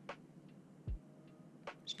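Quiet room with a few faint, short clicks and one soft low thump about a second in.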